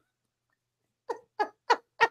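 A woman laughing. After about a second of quiet she lets out a run of short, evenly spaced laughs, about three a second.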